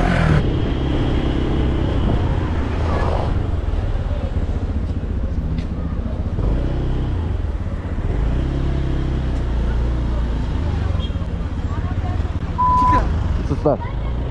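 Motorcycle engine running at low revs in city traffic, picked up by a helmet-mounted camera with wind rumble, its pitch shifting slightly as the bike pulls along. A short steady beep sounds about a second before the end.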